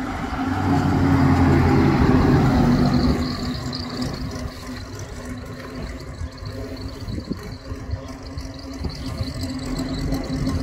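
Freshly rebuilt straight-eight engine of a 1934 Bugatti Type 57 running at low speed as the car passes close by. It is loudest in the first three seconds, then quieter and steady as the car moves away.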